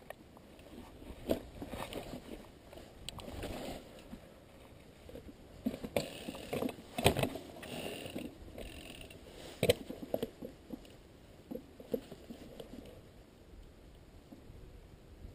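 Mountain bike rolling down a rooty dirt trail: tyres crunching over the ground, with irregular knocks and rattles from the bike as it drops over roots. The sharpest knocks come about halfway through and again a little before ten seconds in.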